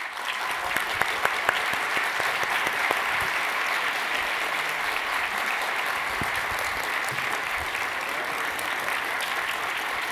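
An auditorium audience applauding steadily, a dense sustained clapping from a large crowd that starts suddenly right at the start.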